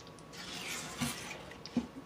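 A spatula stirring a candy mixture of water and light corn syrup in a heavy pot: soft liquid swishing, with a couple of light taps against the pot about a second in and again near the end.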